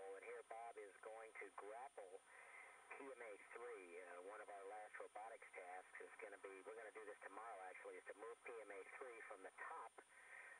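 One person talking continuously, the voice thin and radio-like, with a faint steady high-pitched tone underneath.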